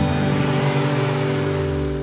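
Cartoon car sound effect from an animated intro: a steady engine-like hum with a rushing noise over it, fading out at the end.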